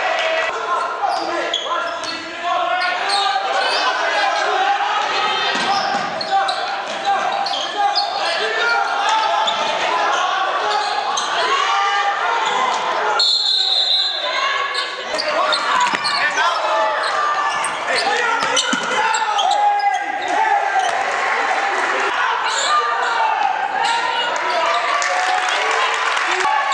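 Basketball game sounds echoing in a gym: the ball dribbling on the hardwood floor under overlapping shouts from players and the bench. About halfway through comes a short, high referee's whistle.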